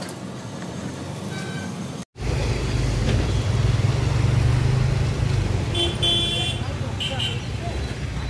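Street traffic noise: a steady low rumble of vehicles, with two short vehicle-horn toots about six and seven seconds in.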